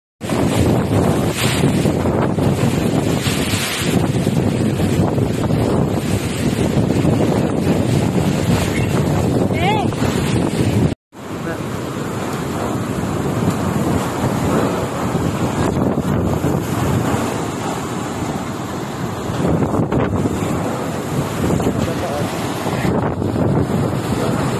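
Typhoon-strength wind blowing hard and buffeting the microphone, a loud, steady rush of noise with a brief break about eleven seconds in.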